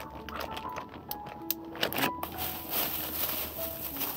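Plastic packet of wheat flour crinkling as it is torn open and handled, with a run of sharp crackles, then a steadier rustle from about halfway through as the flour is shaken out into the bait tub.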